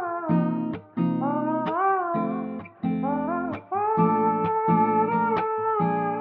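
Background guitar music: a bending, gliding melody line over short, evenly repeated chords.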